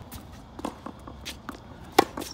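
Tennis shoes shuffling and stepping on a hard court, then a sharp, loud crack of a racket striking the ball on a forehand at the very end.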